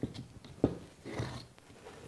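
A finished T-shirt-loop potholder being pulled off the pegs of a wooden pot holder loom: a few light wooden clicks and knocks, the loudest about two-thirds of a second in, and a soft fabric rustle about a second in.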